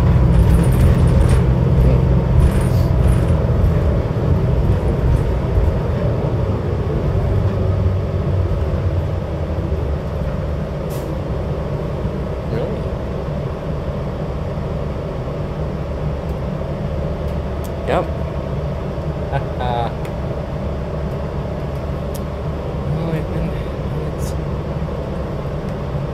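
Cabin noise of a New Flyer Xcelsior XD60 articulated diesel bus under way: a steady engine and road rumble, loudest in the first several seconds and easing after about ten seconds. There are a few short rattles, and a brief squeak about eighteen seconds in.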